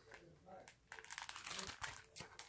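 Plastic sticker packaging crinkling faintly as sticker packs are handled, a run of small crackles starting about a second in.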